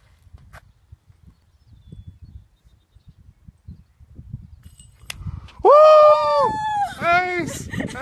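Wind rumbling on the microphone, then about five and a half seconds in, several loud, high-pitched whoops and shrieks of excitement in a row, ending in a "woo!" and laughter: a cheer for a disc golf hole-in-one.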